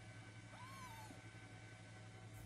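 A Munchkin kitten gives one short, faint mew about half a second in, rising and then slowly falling in pitch.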